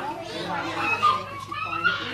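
Young children's voices while they play: high chatter and calls, with one rising call in the second half.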